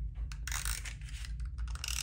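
Adhesive tape runner drawn along the underside of a paper sheet in short strokes, its ratchet gears clicking with a scratchy rasp and paper rustling.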